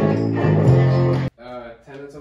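Electric bass guitar playing sustained low notes with a fuller instrumental mix of guitar above it. It cuts off abruptly about a second in, and a quieter voice follows.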